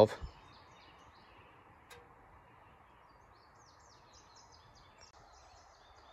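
Quiet outdoor background with faint, scattered bird chirps and a single soft click about two seconds in.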